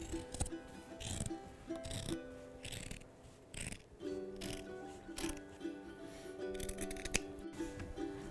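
Dressmaking scissors snipping through two layers of folded fabric, a series of short cuts about one a second, over background music.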